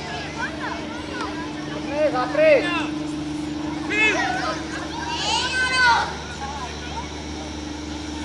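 Voices calling out during a youth football match. There are short, high-pitched shouts about two seconds in, again at four seconds, and around five to six seconds in, over a steady low hum.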